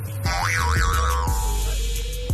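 Background music with a steady beat. Over it, from about a quarter second in, a comic sound effect whose pitch swoops up and down twice before fading out.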